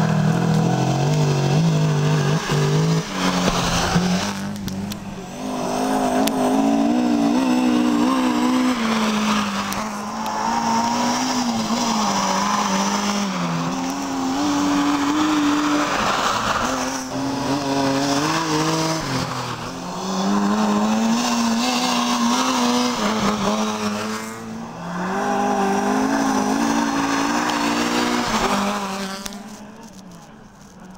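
Rally car engine revving hard through the gears on a snow stage, the pitch climbing, breaking off and dropping again every few seconds with each shift and lift of the throttle, fading away near the end.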